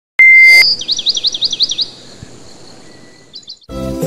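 A loud electronic beep, then a fast warbling chirp that rises and falls about seven times in a second, and three short chirps a moment before the end. Music with plucked strings starts just before the end.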